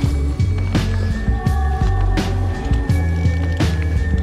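Background music: held chords over a deep steady bass, with a sharp beat about every three quarters of a second.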